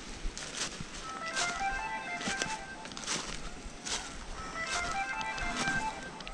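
Footsteps crunching through dry fallen leaves while walking uphill, an irregular series of short crunches. Soft background music of short melodic notes plays along with them.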